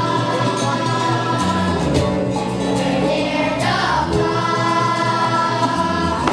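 Boys' choir singing over a recorded instrumental backing track, with held notes and a steady accompaniment.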